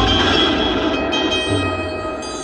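Stage-drama music: sustained keyboard notes with a sudden low rumbling, noisy sound effect that starts at once and slowly fades, underlining an actor's collapse.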